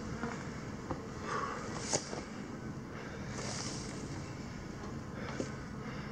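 Outdoor hillside ambience with a steady wind hiss on the microphone, and a few light clicks and rustles of a person shifting in the grass, about one, two and five seconds in.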